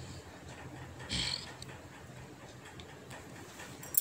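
Quiet room tone with a faint steady hum, broken about a second in by one brief soft rustle.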